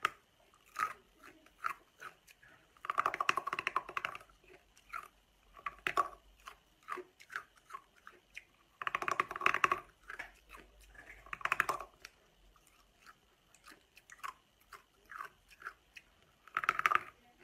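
Hard coloured ice being bitten and crunched between the teeth: dense bursts of crunching about three seconds in, again about nine seconds in and just before twelve seconds, with small cracks and clicks of ice between.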